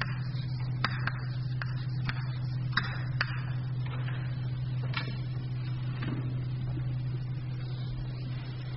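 A steady low hum with a scattering of light clicks and knocks, most of them in the first half.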